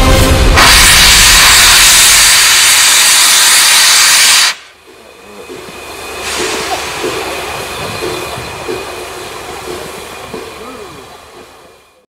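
LNER A3 Pacific 60103 Flying Scotsman venting steam: a loud, even hiss that cuts off abruptly about four and a half seconds in. A quieter hiss of steam follows, swelling and then fading away.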